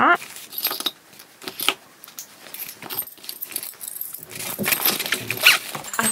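Small metal nail tools clinking and jangling against each other as they are handled and packed, in a run of scattered light clinks.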